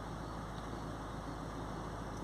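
Range Rover Evoque's 2.0-litre four-cylinder diesel engine idling steadily, heard from inside the cabin.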